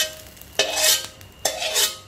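Spatula scraping across a metal wok twice, each stroke ringing briefly on the metal, as the last fried rice is pushed out with none sticking to the pan.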